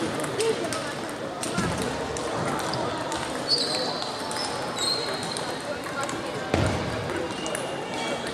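Table tennis balls clicking on tables and bats at several tables at once, irregular ticks over the chatter of players in a large sports hall, with a few short high squeaks and one heavier thump a little after six seconds in.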